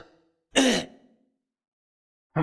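A man briefly clears his throat once, about half a second in, between sentences of his talk into a microphone.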